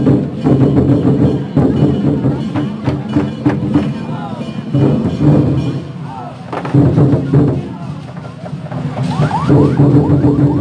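Dragon-dance troupe's large barrel drums beaten in a fast, driving rhythm with other percussion, easing off briefly about six seconds in before picking up again, over a crowd's voices.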